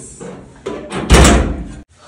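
A metal door being slammed shut: a few light clicks of the handle and latch, then a loud bang about a second in that rings briefly and cuts off abruptly.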